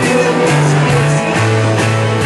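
Rock band playing live: guitar over a bass line that steps between held notes, with steady drum hits.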